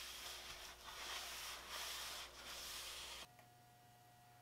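Shop towel rubbing Danish oil into a walnut board in repeated wiping strokes. It stops abruptly shortly before the end, leaving only a faint hum.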